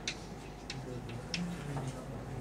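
Chalk on a chalkboard while figures are written: a few short, sharp taps, some under a second apart.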